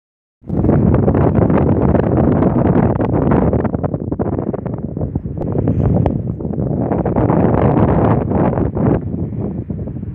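Wind buffeting the microphone: loud, rough rumbling noise that starts about half a second in and comes in gusts, easing a little around the middle.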